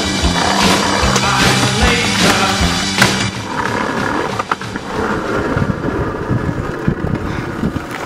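Background music with a steady beat that stops about three seconds in, giving way to a skateboard's wheels rolling on brick paving, with a few sharp clacks of the board.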